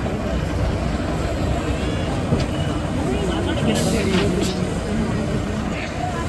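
Several people talking over the low, steady rumble of an idling lorry engine, with a short hiss about four seconds in.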